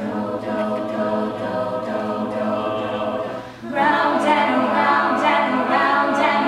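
Mixed-voice a cappella group singing, a female soloist over sustained backing voices. About three and a half seconds in the sound drops briefly, then the voices come back louder and fuller.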